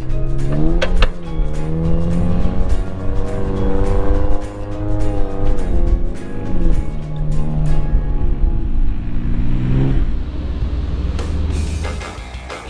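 A vehicle engine revving under heavy load during a rope recovery of a truck stuck in soft sand. The revs climb, sag and climb again twice, then stop about ten seconds in. Background music with a steady beat plays over it.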